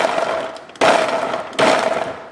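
Ninja blender running in three short bursts, about a second apart, its blades chopping soaked dried cherries and dates. Each burst starts sharply with a steady motor hum and dies away.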